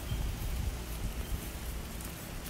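Steady outdoor background noise: an even hiss with a low rumble underneath, and no distinct event.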